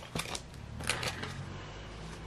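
A few light clicks and rustles of hands handling a paper cash envelope in a ring binder, mostly in the first second, then soft, quieter handling.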